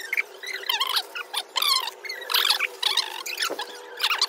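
Adhesive tape being pulled off its roll and wrapped around a stick, in a series of short, high squeals and rasps.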